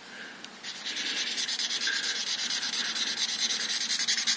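A cheap red felt-tip marker scribbling back and forth on paper, colouring in a large area with quick, even strokes, several a second, starting about half a second in.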